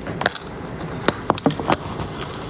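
A handful of light clicks and clinks of small hard objects being handled on a tabletop: one near the start, then several in quick succession in the second half.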